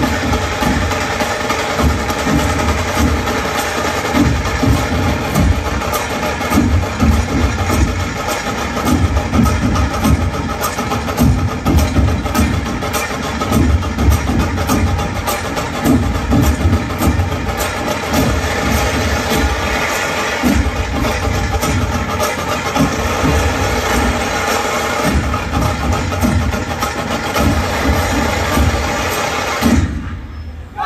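Live ensemble of large barrel drums and smaller drums playing a dense, driving rhythm, with a steady sustained drone running over the drumming.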